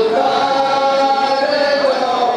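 Group of men chanting a nauha, a Shia lament, in unison, holding one long note.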